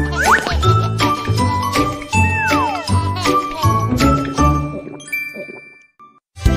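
Bright chiming and tinkling tones, struck notes that ring on, with a couple of sliding whistle-like glides, one rising near the start and one falling about two seconds in. It fades out near the end.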